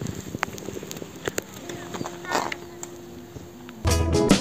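Faint outdoor ambience with scattered small clicks and a faint steady hum, then background music with a deep bass beat starts just before the end.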